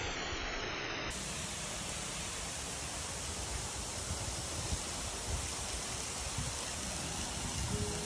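Steady rushing noise of falling or splashing water, even and unbroken, with a slight change in tone about a second in.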